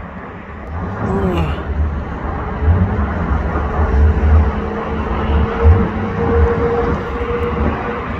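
Jet airliner flying overhead: a steady, broad engine rumble with a faint steady tone coming in about halfway, and gusty low buffeting on the microphone.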